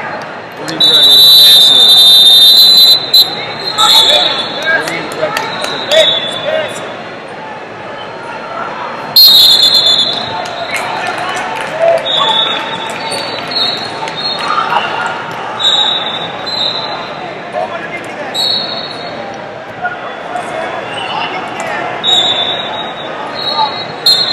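Referee whistles echoing in a large hall. A long loud blast runs from about one to three seconds in, another sharp blast comes around nine seconds, and shorter whistles sound on and off throughout, over a steady hubbub of crowd voices and shouting.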